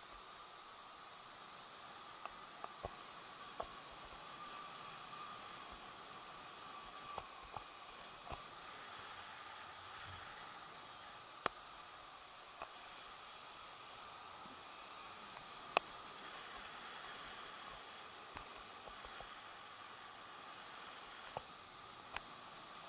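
Faint steady hiss of air rushing past a paraglider in flight, with a faint steady hum under it and about a dozen scattered sharp ticks.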